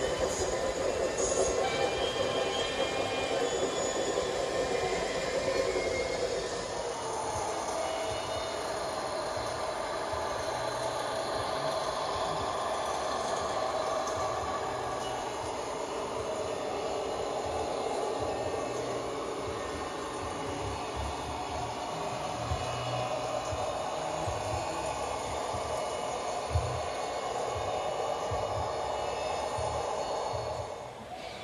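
LGB G-scale model train rolling along its track, a steady rumble of wheels on rail with occasional low knocks. The sound changes in character about seven seconds in.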